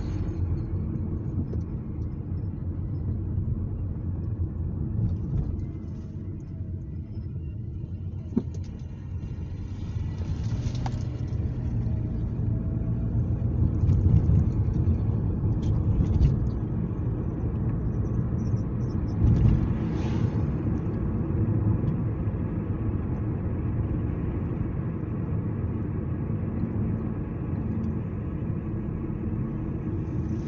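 Steady low road and engine rumble of a moving car, heard from inside the cabin, swelling for a while midway. A single sharp click about eight seconds in.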